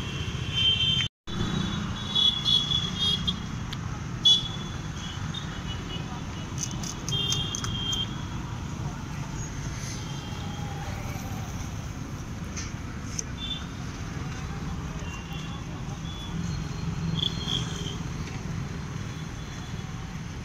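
Street ambience of road traffic: a steady low rumble, with short high-pitched tones now and then and a sharp click about four seconds in. The sound drops out briefly about a second in.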